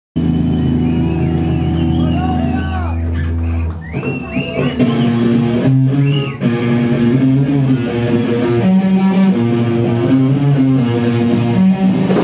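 Electric guitar and bass guitar playing live through amplifiers: a loud low sustained drone with bending guitar notes for the first few seconds, then a riff of held notes that change every half second or so.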